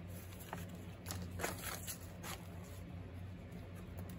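Faint handling noise of paper and a small bottle on a craft table: a few light taps and rustles over a low steady hum.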